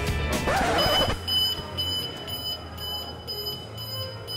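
Store exit anti-theft gate alarm beeping: a high electronic beep pulsing rapidly on and off, starting about a second in. It is set off by a perfume package whose security strip was never removed.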